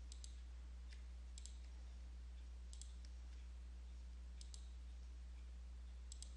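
Computer mouse clicking faintly: short press-and-release clicks, five or six times spread over the seconds, as units are picked from a list and a button is pressed. A low steady hum runs underneath.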